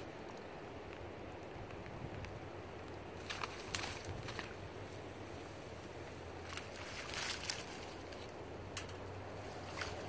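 Faint steady outdoor background, broken by a few brief splashing and rustling noises as hands work in shallow water around a submerged wire colony trap.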